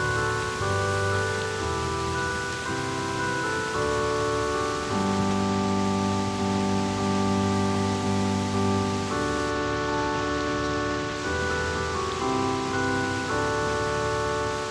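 Keyboard played in slow, sustained chords that change every second or two, with a low bass note under each chord.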